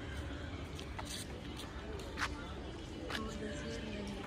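Outdoor ambience: distant, indistinct voices over a low steady rumble, with a few sharp clicks.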